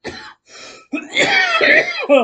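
A man coughing and clearing his throat: two short bursts, then a longer, louder voiced one. He feels something caught in his throat.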